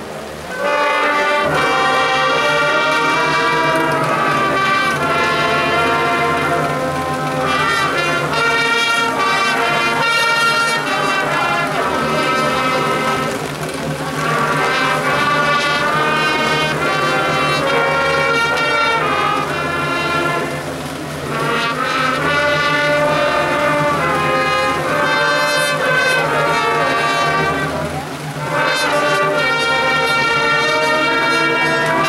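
A marching band plays the school alma mater in slow, sustained brass chords, with short breaks between phrases.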